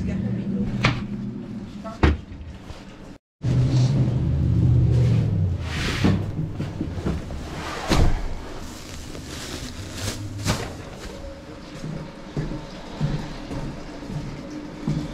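Wooden cabinet doors being swung open and shut, then boxes and household items being rummaged through, with several sharp knocks and clatters.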